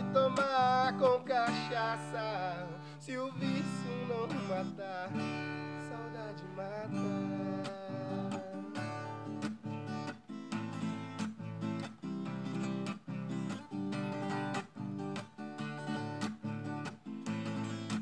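Steel-string acoustic guitar playing an instrumental passage: chords held and ringing at first, then strummed in a steady rhythm from about eight seconds in.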